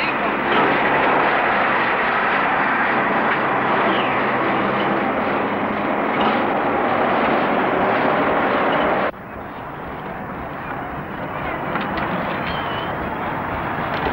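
Loud, steady vehicle noise, a dense rush with a low engine hum, that cuts off abruptly about nine seconds in. A quieter outdoor background follows, with a few faint high chirps near the end.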